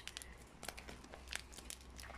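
Faint crinkling and small ticks of clear sticky tape and plastic being pressed and folded by fingers over the edge of a paper squishy stuffed with crumpled plastic bags.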